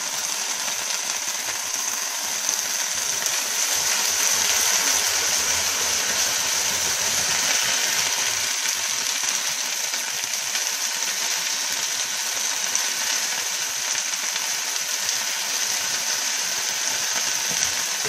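Brussels sprouts sizzling in a frying pan as they are sautéed, a steady hiss.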